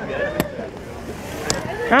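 People's voices talking, with two short, sharp clicks, one about half a second in and one about a second and a half in.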